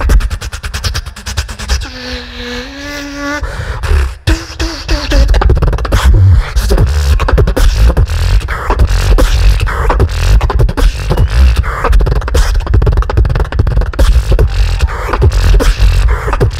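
Solo beatboxing amplified through a handheld microphone: a dense, fast run of drum-like mouth sounds over heavy bass. About two seconds in there is a short hummed melody of a few held notes, and after a brief break the fast beat runs on without a pause.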